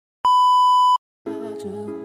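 Colour-bars test tone: one loud, steady beep of under a second. After a short silence, background music with sustained chords begins.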